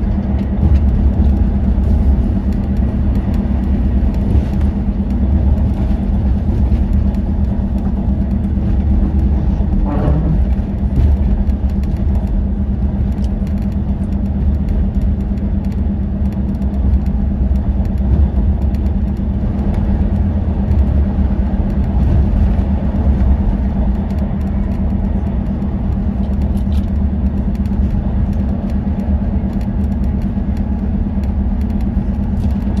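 Cabin noise of a Volvo B11RT coach cruising at motorway speed: a steady drone from its six-cylinder diesel, with tyre and road rumble and a constant hum. A brief wavering tone comes in about ten seconds in.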